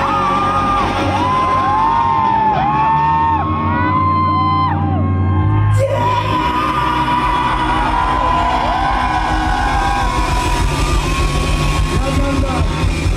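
A live rock band playing loudly, with a man singing and yelling into the microphone over electric guitar, bass and drums.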